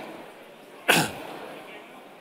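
A single loud sneeze about a second in, short and sudden, with quiet room noise around it.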